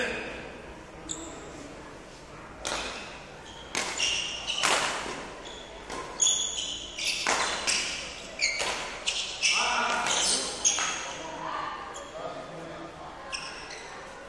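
Badminton footwork on an indoor hall court: a string of sharp, irregular thuds and scuffs of shoes on the floor as a player moves and lunges, most of them between a few seconds in and about eleven seconds in.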